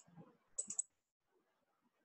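Computer mouse clicks: one sharp click, then a quick run of clicks about half a second later, as an image file is picked in a file dialog.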